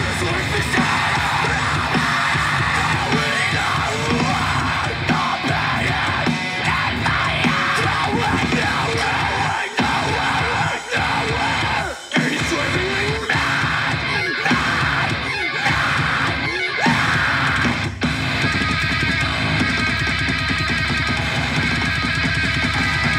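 Heavy rock band recording playing loudly: distorted guitars and drums with yelled vocals, dropping out for a moment a couple of times around the middle.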